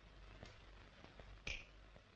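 Near-silent room tone with a few faint ticks and one short, sharp snap about one and a half seconds in.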